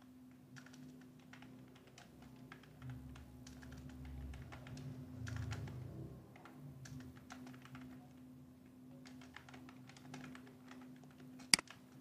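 Computer keyboard typing: faint, irregular key clicks, with one much sharper click near the end, over a steady low hum.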